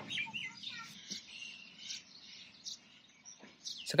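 Faint bird chirps: a run of short, high calls in the first two seconds, then only a few scattered ones as the sound dies away.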